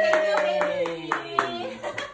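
Hands clapping at a steady pace, about four claps a second. A voice holds one long note over the claps until a little under a second in.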